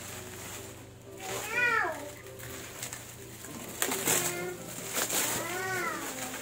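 Bubble wrap crinkling and rustling as it is pulled off a bicycle rim. Two short animal calls that rise and fall in pitch sound over it, one about a second and a half in and one near the end.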